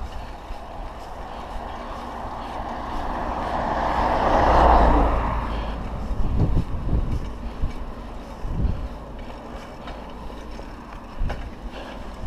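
Wind rushing over an action camera's microphone on a moving bicycle, over a steady low road rumble. A louder rushing swell builds to a peak about halfway through and fades, and a few short knocks follow.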